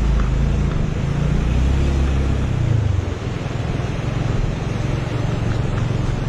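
Motorcycle engine labouring in first gear up a steep dirt climb, its low drone wavering in pitch and shifting about halfway through, over steady wind and road noise.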